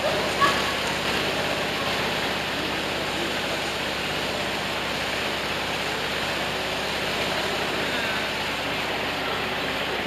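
Steady rush of flowing water in an outdoor bathing pool, with faint, brief voices of bathers now and then.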